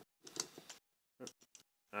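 Plastic parts of a Transformers Deluxe Drift figure clicking as they are unpegged and handled during transformation: a few clicks in the first second, then a quick run of small clicks later.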